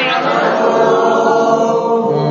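A group of voices chanting a Quranic verse together in unison during tajwid practice, drawing out long, held notes.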